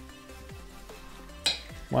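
Background electronic music with steady tones and falling sweeps, broken by one sharp click about one and a half seconds in.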